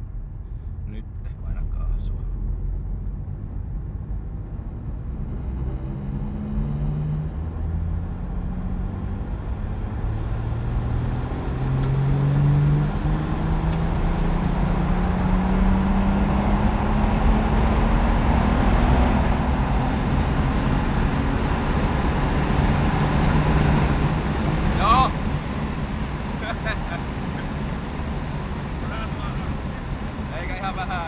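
Turbocharged BMW M50 inline-six in an E30, heard from inside the cabin, pulling at full throttle in one gear from very low revs: the engine note climbs slowly and steadily for about twenty seconds, a wide-open-throttle pull made to tune the fuel map. Near the end a short sharp sound comes and the engine note drops away.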